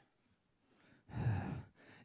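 A man's short breathy sigh into a handheld microphone, heard once about a second in.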